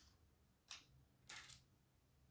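Near silence, broken by two faint, brief slides of trading cards being pulled across one another, about a second apart.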